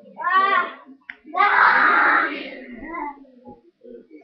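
Wordless vocal sounds from a person's voice: a short, high, wavering cry just after the start, then a louder, longer, rough and breathy vocal sound about a second and a half in that trails off.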